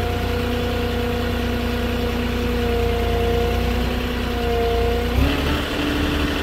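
Moffett truck-mounted forklift's engine running steadily with a low rumble and a steady hum as the forklift reverses. About five seconds in the low rumble drops away and the engine note steps up slightly.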